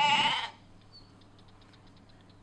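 A sheep bleating once, a short wavering call that is over within about half a second.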